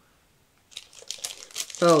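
Paper sticker sheet being handled, rustling and crinkling in uneven bursts that start about a second in.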